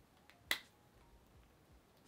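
A single short, sharp click about half a second in, otherwise near silence.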